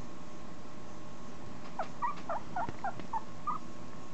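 Italian Greyhound puppy, about two and a half weeks old, squeaking: a quick run of about eight short, high squeaks, starting a little before halfway through and lasting about two seconds.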